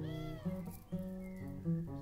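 Acoustic guitar playing the song's intro in picked notes, with a short high call that rises and falls at the very start, over the guitar.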